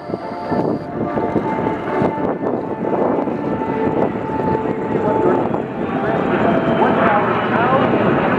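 Aircraft passing overhead: the drone of a C-130 tanker's four turboprops, with two F/A-18 jets flying close behind it, mixed with people's voices, growing slightly louder toward the end.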